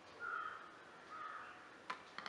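A crow cawing twice, faint and harsh, in the background, then a single sharp click just before the end.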